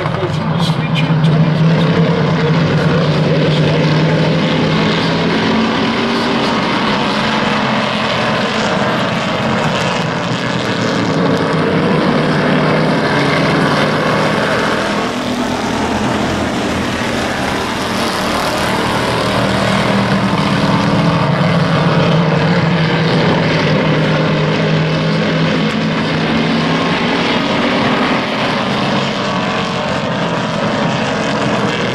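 A pack of hobby stock race car engines running at speed around an oval, the sound swelling twice as the field goes by, about two seconds in and again around twenty seconds in.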